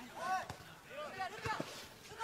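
Faint shouts of players calling on the pitch, with two short sharp knocks of a football being kicked, about half a second and a second and a half in.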